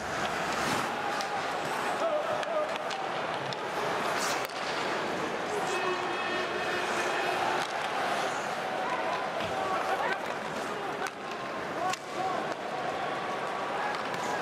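Ice hockey arena crowd: a steady din of many spectators' voices, with a few sharp clicks from the play on the ice.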